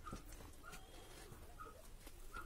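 Faint short chirping calls from an animal, three in two seconds, with a few faint clicks.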